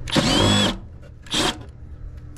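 Milwaukee M12 Fuel cordless impact driver running a screw into a condenser's sheet-metal panel: one half-second run with a whine, then a short second pull of the trigger about a second later.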